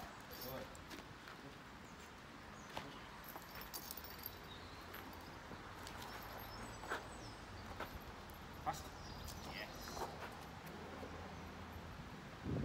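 Faint scuffling with a few scattered sharp clicks as a dog grips and holds a decoy's bite suit during bite work, feet shuffling on brick paving.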